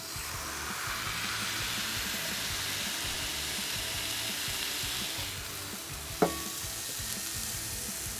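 Ground-beef smash burger patties sizzling on the hot flat top griddle plate of a Ninja Woodfire Grill while a fresh patty is pressed flat with a metal spatula. The sizzle is strongest for the first few seconds and then eases, and there is one sharp tap about six seconds in.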